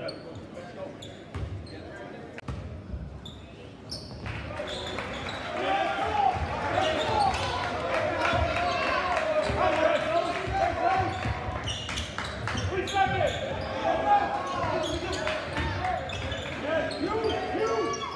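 Basketball bouncing on a hardwood gym floor as it is dribbled, with a crowd of spectators talking and shouting that gets much louder about four seconds in, echoing in the gym.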